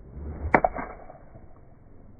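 Golf iron swung at a ball on a driving range: a short swish building through the downswing, then a sharp click as the clubface strikes the ball about half a second in, with a lighter knock of the club into the turf just after.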